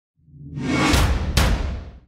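Logo-animation sound effect: a whoosh swelling up over a deep low rumble, hit by two sharp strikes about a second in and a little later, then fading out.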